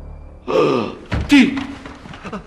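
A man gasping in fright: a sharp gasp about half a second in, a dull thud, then a louder cry that falls in pitch.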